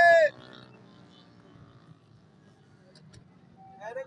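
A man's loud, drawn-out call at the very start, then a quiet stretch of faint low hum and background with one short click about three seconds in, before men's talk resumes near the end.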